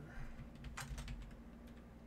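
A few scattered keystrokes of typing on a computer keyboard, bunched in the first half, over a faint steady hum.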